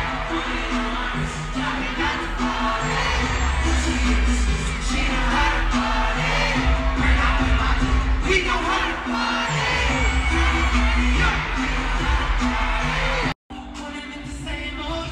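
Live pop/R&B concert music with singing and heavy bass, heard through a phone's microphone from the arena stands. The sound cuts out briefly just before the end.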